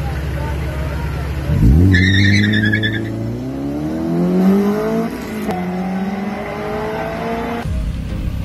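Honda Civic EG hatchback race car launching from the start line: the engine is held at revs, then a short tyre squeal as it pulls away about two seconds in, and the engine note rises through the gear, drops at a shift a few seconds later and rises again as the car accelerates away. The sound cuts off just before the end.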